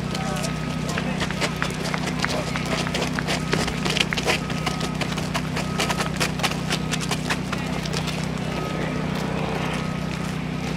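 Footsteps of a marching band walking on pavement, a dense run of irregular shoe clicks that is loudest around the middle, with voices talking and a steady low hum underneath.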